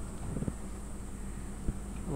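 A low steady hum, with one sharp click near the end.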